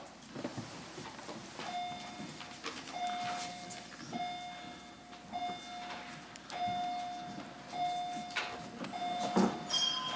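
The legislature's division bell ringing to summon members for a standing vote. It sounds as a steady one-pitch ring in repeated pulses of about a second each, with short breaks between, starting a little under two seconds in.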